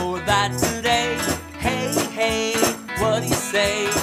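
A man singing a children's rock song to his own strummed electric guitar, with a foot tambourine jingling on the beat.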